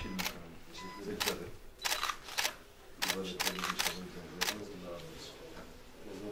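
Camera shutters clicking about ten times at irregular intervals, some in quick runs, as photos are taken, over a low murmur of voices in the room.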